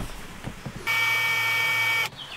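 A steady electric buzz, one unchanging tone, that starts suddenly a little under a second in and holds for just over a second before cutting off.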